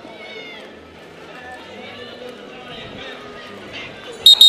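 Crowd and skaters' voices in a gymnasium, many people talking and calling out at once.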